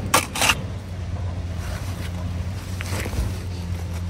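A steel shovel scraping and stabbing into loose crushed rock, twice in quick succession at the start and once more faintly later. Under it, a steady low hum of heavy machinery running.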